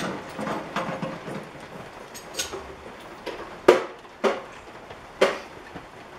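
Several sharp clicks and light taps scattered over a faint steady hiss, the loudest a little past halfway.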